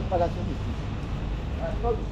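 A man's voice in two brief snatches of speech, over a steady low rumble of street traffic.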